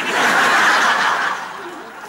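Live audience laughing together. The laughter starts at once and fades over the second half.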